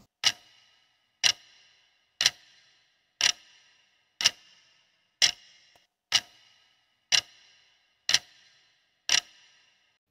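Clock-tick sound effect of a countdown timer: ten sharp ticks, about one a second, each with a short ringing tail.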